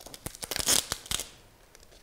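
Brown plastic packing tape ripped off its roll while being laid along the edge of an aluminium screen-printing frame. The rasping rip is loudest just under a second in, with a shorter second rip soon after.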